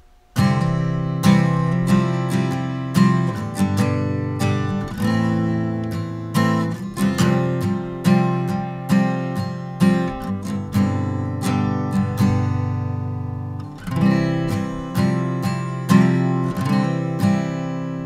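Takamine steel-string acoustic guitar with a capo, strummed in a steady rhythm through a simple chord progression in C (C, G, A, F, G, C), with a brief softer moment about three-quarters of the way through.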